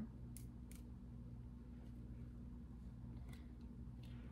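Quiet room tone with a steady low hum, broken by two faint short clicks about half a second in and one more a little past three seconds.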